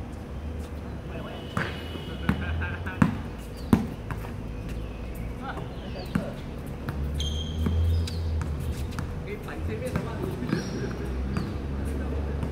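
Basketball bouncing on a hard outdoor court during play, with a few sharp, loud bounces around three seconds in and more scattered ones after.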